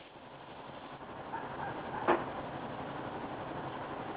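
Quiet outdoor background: a faint, steady noise with one brief, faint sound about two seconds in.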